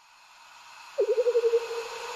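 Electronic intro sound: a hiss swells up, and about a second in a single mid-pitched tone comes in with a quick wavering that settles into a steady hum.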